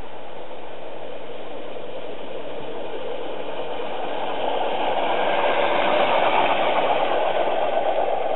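7¼-inch gauge live-steam Crampton locomotive running with a rapid chuffing exhaust, growing louder as it approaches and passes, loudest about six seconds in.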